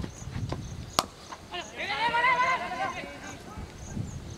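Cricket bat striking the ball, a single sharp crack about a second in, followed by a long, wavering shout from a player lasting about a second.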